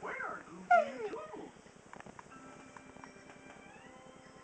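Two or three short sliding vocal cries in the first second and a half, the loudest about three-quarters of a second in, followed by faint steady electronic tones at several pitches.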